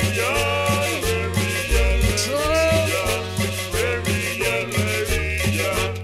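Cumbia music played loud over a sound system, with a steady bass beat, regular percussion strokes and a gliding melody line.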